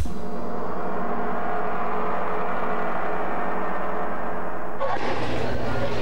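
A single gong-like tone, struck once as the closing sting of a TV commercial, with many steady overtones ringing and slowly fading. About five seconds in it cuts off to a steady hiss with a low hum as the broadcast switches back.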